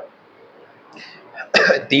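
A man's faint short cough about a second into a pause in his talk, before his speech resumes.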